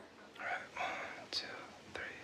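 Soft whispering: a few short, breathy phrases with no sung pitch, following the sudden stop of a sung music track.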